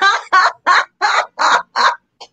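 A woman laughing heartily: a loud run of about six 'ha' bursts in quick, even succession.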